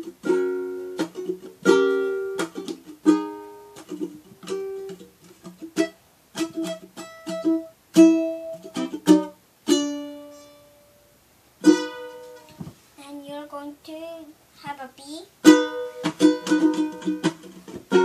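Ukulele played solo: picked notes and strummed chords with sharp, struck attacks, pausing briefly a little before the middle, then a softer passage before full strumming resumes near the end.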